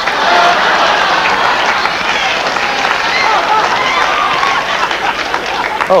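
Studio audience laughing and clapping together in response to a punchline: a dense, steady crowd reaction.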